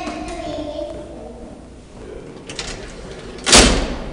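A few light clicks, then a single loud slam about three and a half seconds in, ringing out briefly: an elevator door banging shut.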